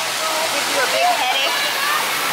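Water-park splash-pad fountains and sprays running: a steady rush of falling, splashing water.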